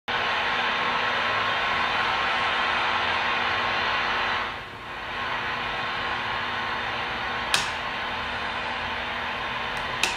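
Static hiss of an untuned analog television, steady, with a brief dip about halfway through and a single click near the end.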